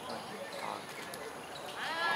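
Players' voices calling faintly across an outdoor football pitch, with a few faint ticks; a louder shout starts near the end.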